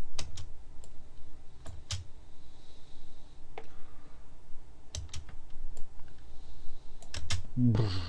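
Computer keyboard keys and mouse buttons clicking: about a dozen sharp, separate clicks at irregular intervals, with a quick run of several near the end.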